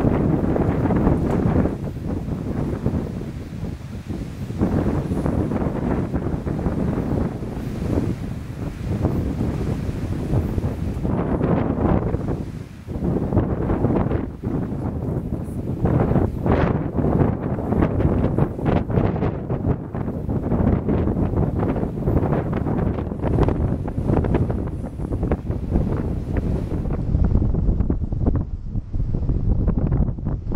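Wind buffeting the camera microphone, a low rumbling noise that swells and eases in gusts.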